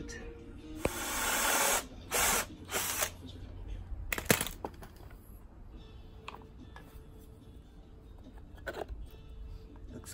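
Cordless drill running in a burst of about a second, then two shorter bursts, followed by a single sharp click about four seconds in.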